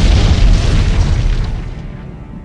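Explosion sound effect: a deep boom that rumbles and dies away about a second and a half in.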